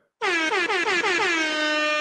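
Air horn sound effect played from a soundboard: one long loud blast that opens with a few downward pitch swoops and then holds a steady tone.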